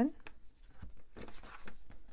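Paper pages of a spiral-bound planner being turned by hand: a few soft rustles and light taps.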